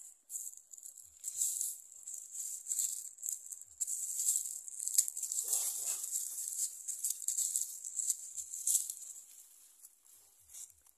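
Hands scraping and scooping loose dry soil close by, with rustling of dry plant debris, as a banana sucker is set into a planting hole and earth is pushed back around its base. The scratchy rustling comes in uneven bursts, with a brief rougher scrape about halfway through.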